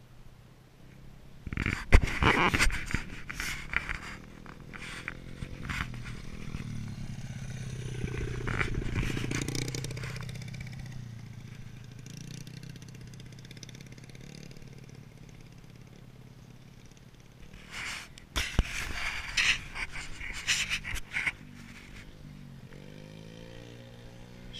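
A small dirt bike's engine approaching, loudest about eight to ten seconds in, then fading as it moves away. Loud bursts of scraping and clattering noise come near the start and again around eighteen to twenty-one seconds in.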